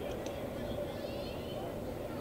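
Open-air softball field ambience: a steady hum and rumble with faint distant voices calling out and a few light clicks.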